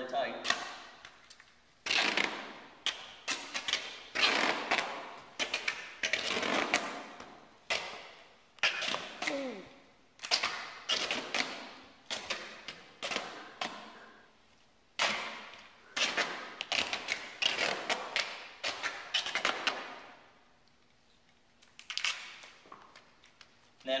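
Gorilla duct tape being pulled off the roll in more than a dozen rasping pulls of a second or two each, with a short pause near the end, as it is wrapped around a padded PVC lower-leg splint.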